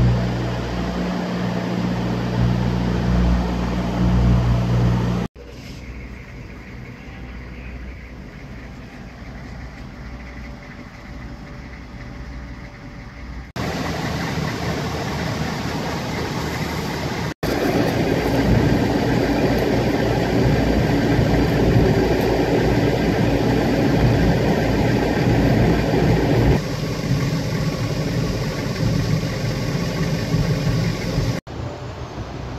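Several cut-together stretches of steady machine noise: first a low hum with two held tones, then a Humvee's diesel engine idling, heard from inside the cab and loudest over the last twelve seconds or so.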